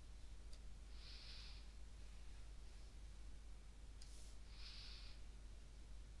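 Near-silent room tone with a low hum, broken twice by a soft breath, about a second in and about four and a half seconds in. A few faint clicks, typical of a computer mouse, come in between.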